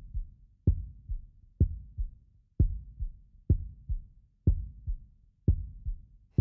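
Heartbeat sound effect: a slow, steady lub-dub of low thumps about once a second, each strong beat followed by a softer one.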